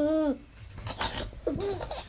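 A young child laughing: a run of short 'ha-ha' laughs ends just after the start, and after a quieter second another laugh begins near the end.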